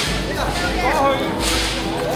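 People talking in Cantonese, with two short bursts of rushing noise, one at the start and one about a second and a half in.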